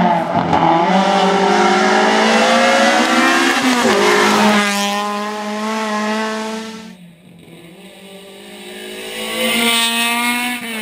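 Rally car engines running at high revs on a tarmac stage, the pitch rising and falling through gear changes and lifts. The sound drops away about seven seconds in, then an engine grows louder again near the end.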